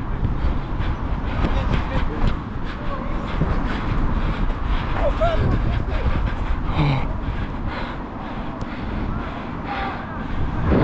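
Wind rumble on a body-worn action camera's microphone during a football match, with the wearer's footfalls on artificial turf as short knocks and players' voices shouting briefly in the distance.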